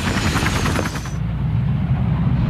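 Aircraft engine running with a rapid, low pulsing beat and a faint falling whine in the first second.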